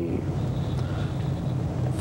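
Steady low hum with hiss, the background noise of an old studio videotape recording, heard through a pause in speech.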